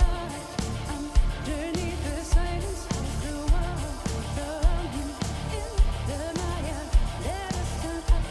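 Live symphonic metal: a woman singing the lead melody over the full band, with a heavy drum beat landing about once a second.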